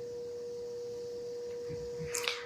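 A steady single-pitched hum over faint room noise.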